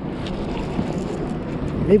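Steady rush of wind and lapping water around a fishing kayak on choppy lake water.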